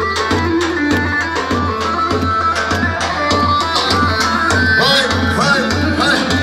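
Kurdish halay dance music from a wedding band: a steady, driving drum beat under a wavering, ornamented melody line, played loud and without a break.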